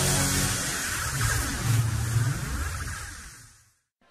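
Game-show theme music for the title sequence, fading out to silence near the end.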